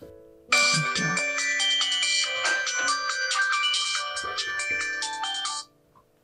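Mobile phone ringtone for an incoming call, playing a tune of steady notes; it starts about half a second in and cuts off suddenly near the end.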